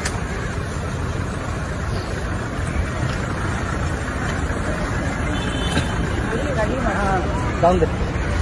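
Steady city street noise with traffic, and a few voices coming in near the end.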